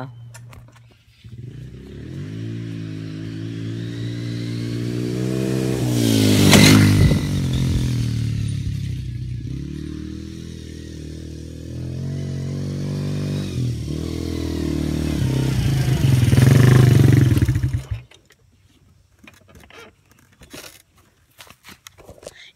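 Small 110cc quad (ATV) engine running under throttle. Its pitch climbs for a few seconds, eases back, then climbs again before cutting off sharply about three-quarters of the way through. A short burst of noise comes at the first high point.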